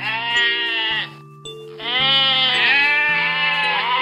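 Sheep bleats over a children's song backing track: a short bleat at the start, then after a brief gap a longer bleat lasting over two seconds, rising and falling in pitch.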